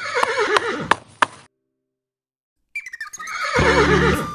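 Two horse whinnies with a wavering, falling pitch, separated by about a second of dead silence. A few sharp clicks sound during the first whinny.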